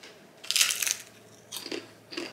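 A bite into a crisp fried piece of food: one loud crunch about half a second in, followed near the end by a few smaller crunches as it is chewed.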